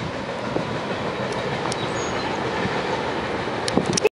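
CSX freight train rolling on the rails as it moves off down the line: a steady rolling noise with a few faint clicks.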